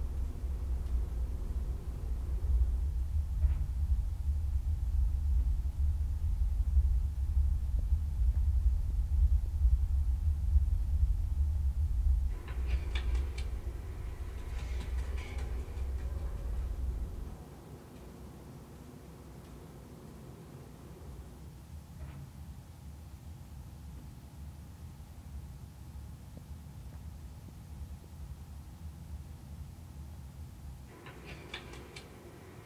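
Quiet, atmospheric film soundtrack played through a home theater system. A deep, steady bass rumble carried by the subwoofers cuts off suddenly about seventeen seconds in. Faint scattered effects and light clicks come in the middle, and only a faint steady ambience remains afterwards.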